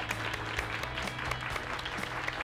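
Applause, a dense patter of clapping, over soft background music.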